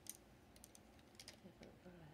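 Near silence with a few faint, short clicks, about one every half second.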